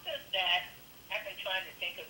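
Quiet speech heard over a telephone line or speakerphone, thin and tinny: a remote participant talking.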